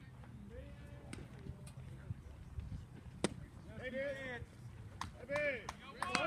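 A pitched baseball smacks once, sharply, into a catcher's leather mitt a little over three seconds in. Two short shouted calls follow.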